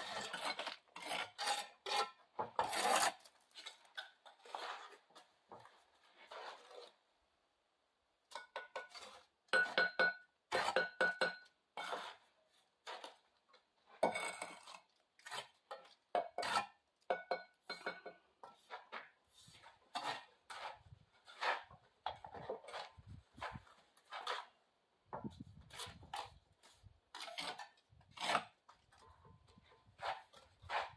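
Steel bricklaying trowels scraping and slapping mortar and tapping hollow clay bricks into place. It is a quick, uneven run of scrapes and clinks, some strikes ringing briefly, with a short pause about eight seconds in.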